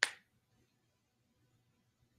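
A single short, sharp click right at the start, over a faint steady low hum of room tone.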